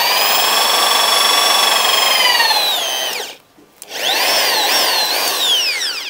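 Corded 500 W Reaim impact drill in plain drilling mode boring a twist bit into an old wooden plank: a high motor whine held steady for nearly three seconds, then winding down to a stop. A second run starts about four seconds in, its pitch dipping and wavering as the bit bites, then falls away near the end; the wood drills very easily.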